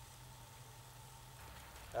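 Faint, steady sizzling of pork and onions frying in a cast-iron kazan, under a low steady hum.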